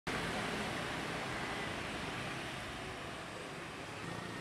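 A minivan driving past on the road, a steady rushing noise that fades slightly.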